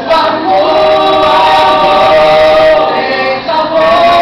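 Vocal jazz ensemble of mixed voices singing held chords in close harmony, with a short break about three and a half seconds in before the next chord.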